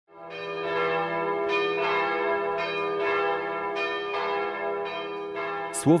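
Bells ringing in a slow run of strikes, each note ringing on under the next.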